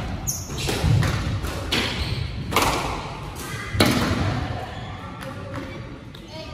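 Squash rally: a squash ball struck by rackets and hitting the court walls, a series of sharp, echoing smacks, loudest about one, two and a half and nearly four seconds in, with a short high squeak near the start. The strikes stop after about four seconds as the rally ends.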